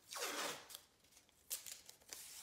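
Blue painter's tape pulled off its roll with a ripping sound in the first half-second, then a few sharp crackles of the tape near the end.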